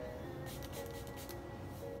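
Pump spray bottle misting a makeup brush: a quick run of short sprays about half a second in, and one more near the end.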